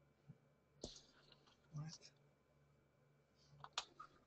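A few faint, sharp clicks from a computer being worked by hand, scattered over near silence: one about a second in, a small cluster around two seconds, and two close together near the end.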